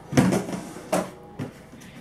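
A plastic bucket handled on a wooden table: three short knocks and clatters, the first the loudest, then a faint rustle.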